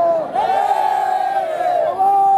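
A crowd of men shouting a protest slogan together, many voices overlapping for about a second and a half. It comes right after a single voice's long, drawn-out call ends.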